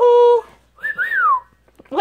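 Yellow-naped Amazon parrot vocalising: a short held call at the start, then a whistle that rises and falls about a second in.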